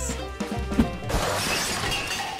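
Background music with a steady beat, then about a second in a shattering crash sound effect comes in over it.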